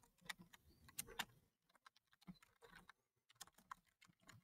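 Faint computer keyboard typing: scattered keystrokes, a few louder ones in the first second or so, then sparser, fainter taps.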